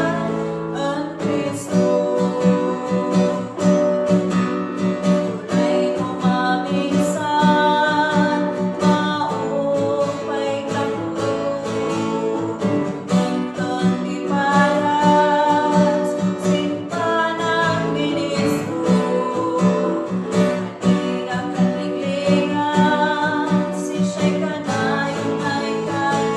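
A girl singing an Igorot gospel song in a steady melody, with instrumental accompaniment.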